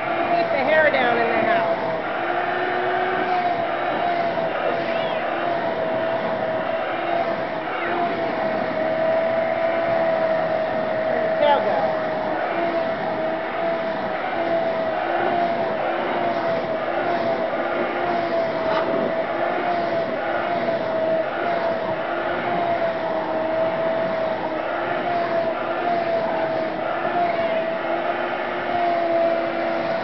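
Vacuum cleaner motor running steadily, its whine wavering slightly in pitch.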